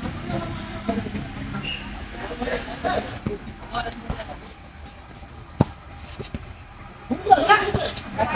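Boys' voices shouting and calling out during an informal football game, with scattered knocks of the ball being kicked and one sharp kick a little past halfway. A louder burst of shouting comes near the end.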